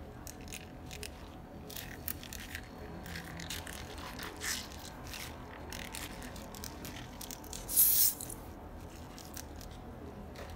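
Thin plastic piping bag crinkling and rustling as it is squeezed and crumpled, pushing green liquid out into a bowl of pink liquid. Scattered short crackles throughout, with one louder rustle about eight seconds in.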